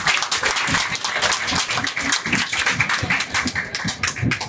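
A crowd of people clapping, a dense, even patter of many hands.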